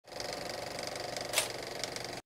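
Film-projector running sound effect: a steady, rapid mechanical clatter with a sharp click a little after halfway.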